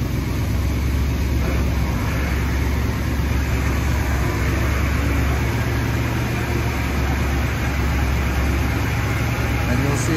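1959 Ford Skyliner's V8 idling steadily, a constant low hum, while the retractable hardtop's electric mechanism works to raise the roof out of the open deck.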